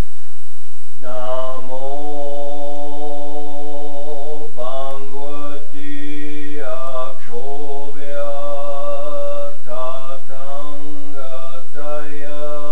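A man chanting a Buddhist mantra in a low voice, in long held phrases on a nearly steady pitch, starting about a second in with short breaks between phrases.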